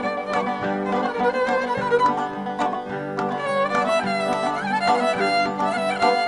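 Instrumental passage from a small folk ensemble. A violin carries the melody with vibrato over quick plucked notes from a zither, with sustained accordion chords underneath.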